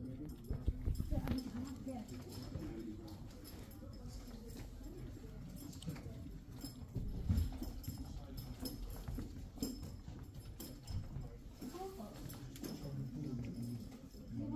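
Faint, indistinct voices over knocks and rubbing of a handheld camera being jostled, with a few sharp knocks about a second in and again near the middle.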